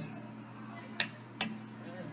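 Two light metallic clinks about half a second apart, from hand tools such as pliers working at a drainpipe, over a faint steady hum.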